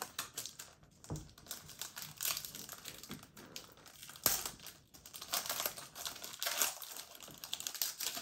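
Foil wrapper of a Pokémon VStar Universe booster pack crinkling and rustling in the hands as it is opened, with many small crackles and a sharper one about halfway through.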